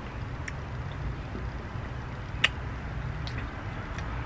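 Quiet outdoor background with a steady low rumble, under a few faint mouth clicks and one sharper smack about two and a half seconds in from a man chewing a mouthful of ice cream cone.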